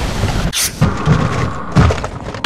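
Loud, rumbling crash sound effect of two steel tanker hulls colliding, with two sharp hissing bursts, one about half a second in and one near the end.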